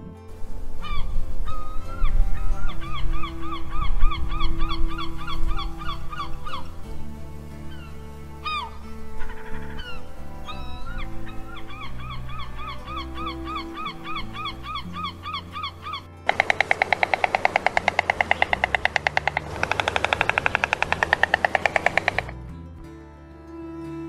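Herring gulls calling: two runs of repeated yelping notes, about four a second, over soft background music. Then a white stork clattering its bill, a loud rapid rattle lasting about six seconds.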